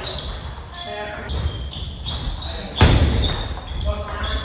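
Table tennis play in a large hall: the plastic ball knocking off the table and paddles as a new point begins, with a louder knock a little before the end. Voices talk in the background.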